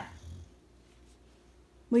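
Boxer dog lying on the floor making a brief, low sound in its throat just after the start, in response to being scolded.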